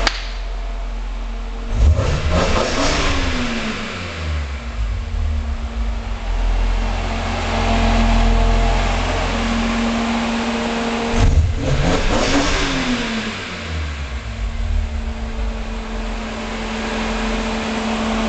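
BMW E46 M3's 3.2-litre straight-six idling, blipped to high revs twice, about two seconds in and again about eleven seconds in. Each time the revs climb sharply and fall back to idle over a couple of seconds. The sound echoes off the concrete of an underground garage.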